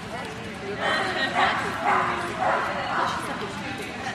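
A dog barking about five times in quick succession, roughly half a second apart, over background voices.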